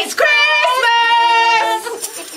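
Young voices singing a Christmas pop song, a short phrase followed by one long held note that breaks off near the end.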